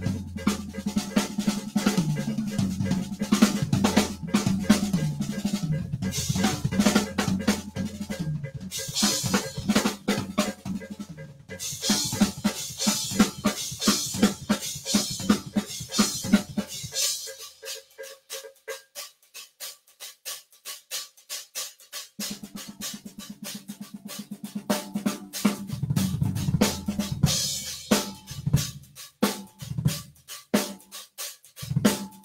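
Mapex drum kit played solo: fast strokes across snare, toms and bass drum, with stretches of cymbal wash. The unmuffled drums ring open. A little past halfway the playing drops to light, quiet strokes for several seconds, then the toms and bass drum come back in.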